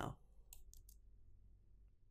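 A few faint computer mouse clicks about half a second to a second in, over a low steady hum; otherwise near silence.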